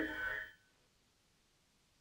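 Near silence: a faint trailing sound fades out within the first half second, then the audio drops to dead silence.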